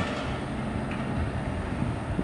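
Distant construction-site machinery running: a steady low mechanical rumble with a faint engine hum and no distinct knocks.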